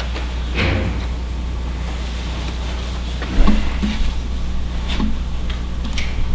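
Steady low room hum with a few faint knocks and rustles. A low thump about three and a half seconds in is the loudest sound.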